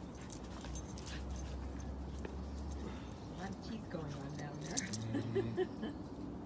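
Two puppies play-fighting: light metallic jingling clicks, like a collar tag, throughout, and low growling sounds from about four seconds in.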